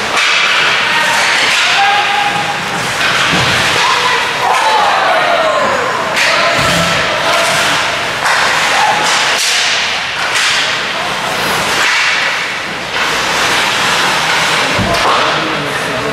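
Ice hockey play: skate blades scraping and cutting the ice, with repeated sharp clacks and thuds of sticks and puck.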